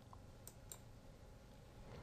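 Near silence broken by two faint, short clicks about half a second in: a computer mouse button being clicked.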